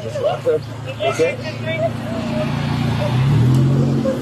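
A motor vehicle's engine running close by, growing louder through the second half and stepping up in pitch about three seconds in, under voices.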